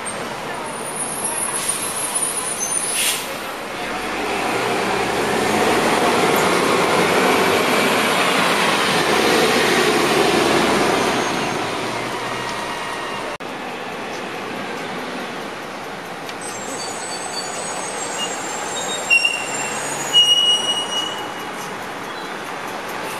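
A diesel city transit bus passing close by, its engine and tyre noise swelling for several seconds and then fading. Later comes steady street traffic with a few short high-pitched squeals near the end.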